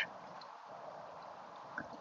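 Faint, steady trickle of water from a small solar-powered birdbath fountain, the pump welling water up through a hole in a sunflower stepping stone so that it flows over the stone into the basin.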